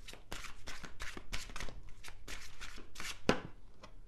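A deck of tarot cards being shuffled by hand, in quick repeated strokes about three or four a second, with one louder stroke near the end.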